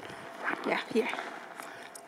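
Speech only: a single short spoken word over a faint, steady background hiss.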